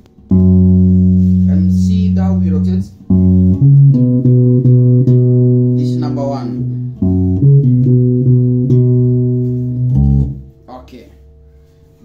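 Electric bass guitar playing a seben bass line in the key of B. It starts with one long held low note, then runs of quick repeated plucked notes stepping up and down, and stops about ten seconds in.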